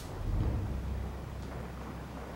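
Low rumble of distant explosions, swelling shortly after the start and then holding steady.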